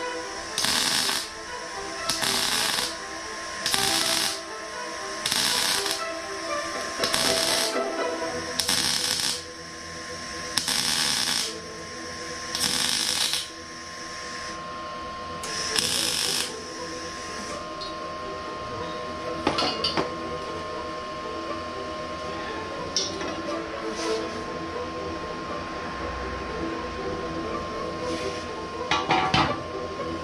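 Short bursts of MIG welding on an exhaust manifold, about a dozen crackling welds each under a second, as a hairline crack at the collector is welded up; the welding stops about 16 seconds in, with background music throughout.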